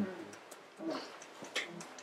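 A listener's soft, hummed "mm-hmm" of agreement, quiet against the room.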